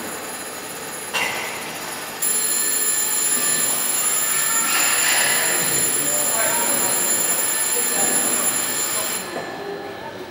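A steady, high-pitched ringing tone that grows louder about two seconds in and stops about a second before the end, over background voices.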